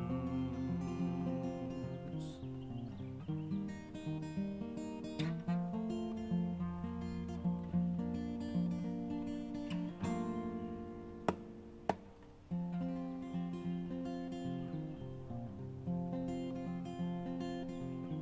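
Acoustic guitar finger-picked in an instrumental passage, with no singing. A little past halfway the playing thins and quietens, two sharp clicks sound about half a second apart, then the picking picks up again.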